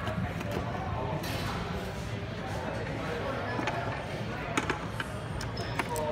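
Background chatter of people talking in a shop, with a few short sharp clicks in the second half.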